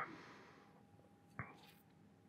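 A soft breathy exhale fading out just after the start, then one sharp small click about one and a half seconds in as a glass is raised to the lips for a sip. Otherwise near silence.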